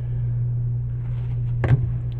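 Steady low background hum, with one short click about three-quarters of the way through.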